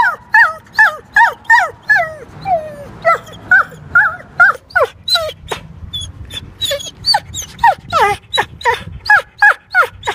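A dog whining over and over in short, high-pitched cries, each sliding down in pitch, about three a second without a break.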